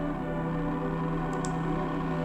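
Ambient background music: a steady drone of held, ringing tones.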